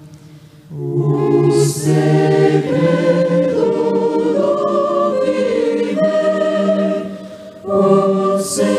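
Choir singing a slow hymn in held phrases, with a brief breath-pause just before the first phrase and another near the end.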